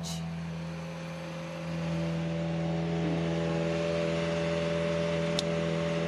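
Toyota GR Yaris Rally1 rally car's engine running steadily at a standstill: a constant hum with several steady tones, getting a little louder about two seconds in. A short click sounds near the end.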